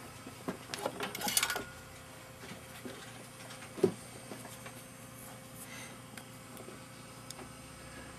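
Faint clicks and light rubbing of small piano-action parts being handled. A cluster of ticks comes in the first second and a half and one sharper knock comes near the middle; otherwise only quiet room tone.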